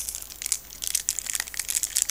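Plastic wrapper of a Pokémon trading card booster pack crinkling in the hands as it is worked open, a quick, irregular crackle.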